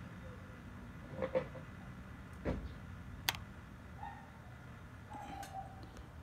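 Quiet background hiss broken by a few faint handling sounds: a soft thump about two and a half seconds in and a sharp click just after, with two faint brief tones near the end.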